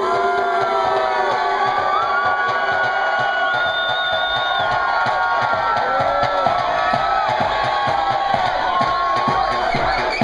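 Club crowd cheering and shouting over electronic dance music from a DJ set. Many voices rise and fall over the track throughout.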